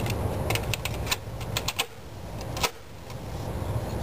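Plastic clicks and clacks of a cassette tape being pushed into an Akai boombox's tape deck and the deck door shut, a quick run of small clicks followed by one louder click about two and a half seconds in, over a steady low rumble.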